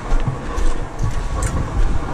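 Small tipping-drum cement mixer turning, churning a sand-and-cement mortar that has just been wetted with a little water. It makes a low, steady rumble that swells and dips about twice a second.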